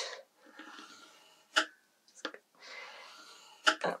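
Bone folder drawn along a ruler to score a fold line in craft card: two soft scraping strokes of about a second each, with a few light clicks between them.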